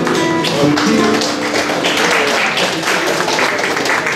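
Group singing with acoustic guitar ends on its last notes within the first second, then the room breaks into applause, dense hand claps that carry on to the end.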